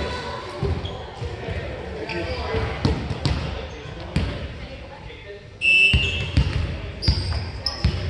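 Players' voices and scattered sharp thumps of a ball bouncing on a hardwood gym floor between volleyball rallies, with a few short high squeaks; the loudest burst comes near six seconds in. All of it echoes in a large hall.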